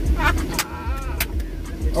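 Two men laughing hard inside a car cabin, in breathy bursts and one long drawn-out laugh, over a steady low rumble of the car.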